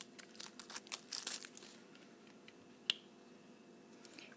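Small plastic lip gloss case handled in the fingers: faint rustling and light clicking for the first second and a half, then a single sharp click about three seconds in as its hinged lid is opened.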